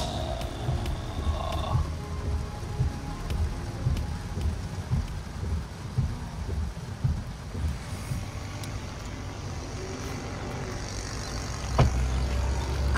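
Heavy rain on the windshield and roof of a moving Tesla Model X, heard inside the cabin with tyre and road noise as a steady rushing and low rumble.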